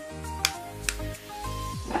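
Background music: a soft track of held notes over a bass line, with two sharp ticks about half a second and a second in.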